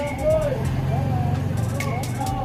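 Background music with a singing voice and a beat that strikes about every two seconds, over a steady low rumble.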